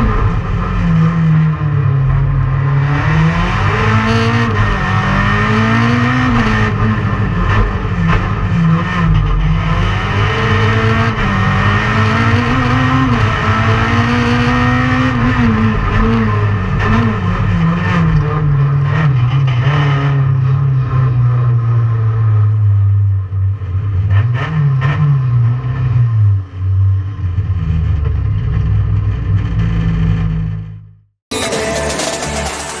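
Renault Clio RS Proto race car's four-cylinder engine, heard from inside the cockpit. It revs up and drops back again and again as the car accelerates, shifts and brakes. In the second half it settles to a lower, steadier note with a few short blips of throttle.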